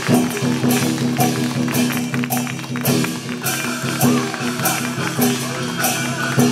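Taiwanese opera stage accompaniment for a martial scene: a regular beat of percussion strikes over sustained tones and a wandering instrumental melody.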